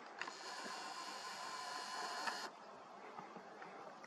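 A camera lens's zoom motor whirs steadily for about two seconds, then stops suddenly.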